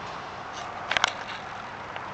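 Steady outdoor background hiss, with a quick cluster of three or four sharp clicks about a second in and a couple of fainter ticks around it.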